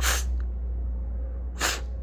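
Two short, breathy hisses from a man's mouth, about a second and a half apart, over a steady low hum.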